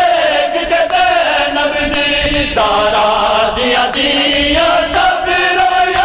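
A group of men chanting a noha (Shia lament) in unison, on long held notes; the melody steps down about two and a half seconds in and climbs back up near five seconds.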